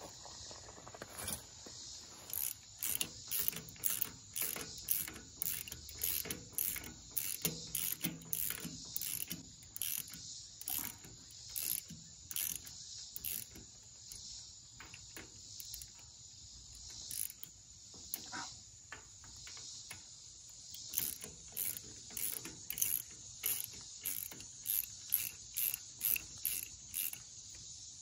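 Socket ratchet wrench clicking in quick runs of strokes as a bolt is turned in a tractor's rear transmission housing, with a short pause in the middle. Crickets chirp steadily behind it.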